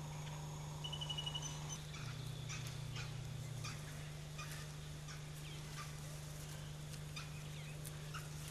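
Faint forest ambience: a short, rapid bird trill about a second in, with other thin bird calls and scattered light clicks over a steady low hum.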